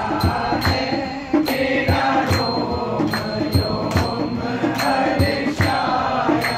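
Men singing a Hindi devotional bhajan, the lead voice carrying the melody, with steady hand claps about twice a second keeping the beat.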